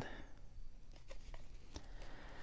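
Faint rustling and a few soft clicks of small cardboard trading cards being handled and sorted by hand.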